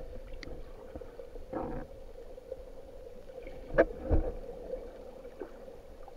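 Underwater sound picked up by a camera held below the surface: a steady low hum, with muffled rustling and a few sharp knocks, the loudest two close together about four seconds in.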